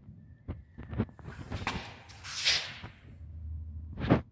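A few light knocks, a scraping rustle about two seconds in, and a sharper knock at the end: a steel brick trowel being handled and laid down on a wooden board.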